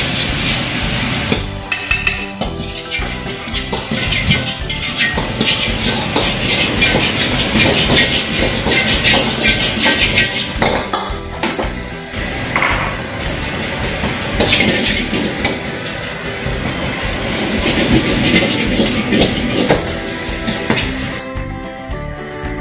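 Background music over wok cooking: frying sizzle and a metal ladle clattering and scraping against a carbon-steel wok.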